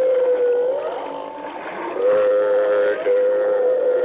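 Dolphin sounds from a tape recorder played back at very slow speed: a low, wavering, moan-like tone that holds steady, slides up and back down, and holds again. It stands for the dolphin saying "Mother".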